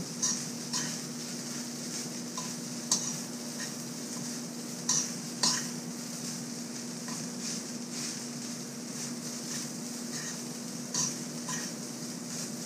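Metal spoon scraping and clinking against a metal wok as cooked rice is stir-fried, with a few sharper clinks scattered through, over a faint sizzle and a steady low hum.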